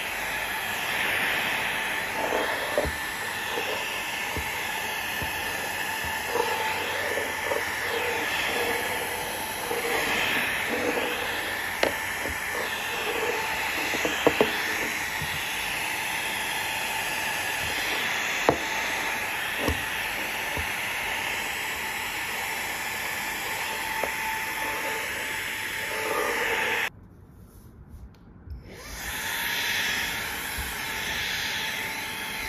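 Xiaomi Mi Vacuum Cleaner Mini handheld vacuum running steadily on the lower of its two power settings, with a few light knocks as the brush nozzle meets the furniture. The sound drops away for about two seconds near the end, then comes back.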